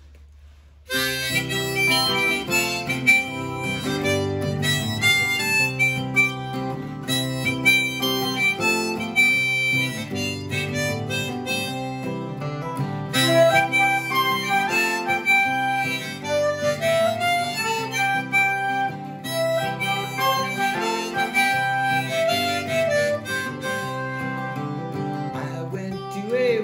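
Instrumental introduction of a folk song, with harmonica playing the melody over strummed acoustic guitar. It starts abruptly about a second in.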